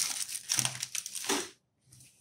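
Hands crumpling a sheet of white paper wrapping: a dense crackle that stops about one and a half seconds in.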